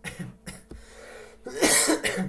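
A man coughing, a short harsh burst about a second and a half in that is the loudest sound here.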